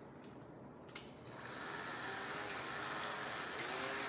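Pampered Chef Flex+ cordless hand mixer switched on: a click, then its small motor comes on and runs steadily, beating eggs and cottage cheese in a stainless steel bowl.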